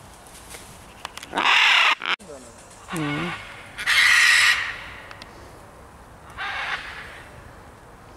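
Scarlet macaws squawking: three loud, harsh calls about a second and a half, four and six and a half seconds in, with a shorter, lower call between the first two.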